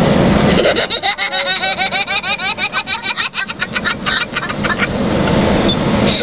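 A young boy giggling uncontrollably: a long run of rapid, high-pitched laughs starting about a second in and breaking off near the end, over the steady road noise of the car's cabin.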